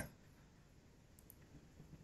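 Near silence: faint room tone, with two quick faint clicks a little over a second in.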